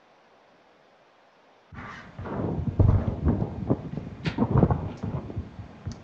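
Near silence, then from about two seconds in a loud, irregular run of knocks, thumps and rustling that lasts about four seconds.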